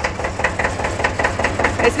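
The MWM diesel engine of a small 1950s Kramer KA15 tractor idling, with a steady, quick, even knocking beat.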